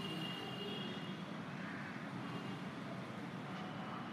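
Steady background rumble of town traffic, with a faint high whine in the first second or so.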